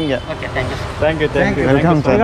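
Men's voices talking, over a steady low rumble of street traffic.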